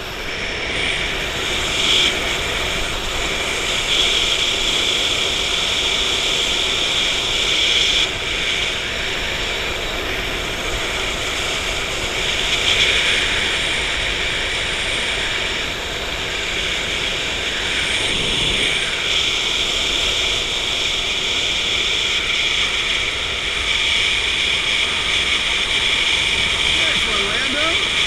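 Wind rushing steadily over a skydiver's helmet-mounted camera and its microphone during the descent, a loud, even noise that swells slightly now and then.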